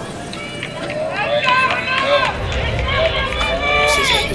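Raised voices calling out, several at once, getting louder from about a second in.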